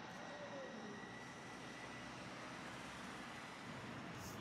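Faint, steady city background noise: a distant traffic rumble, with a thin high whine held through most of it.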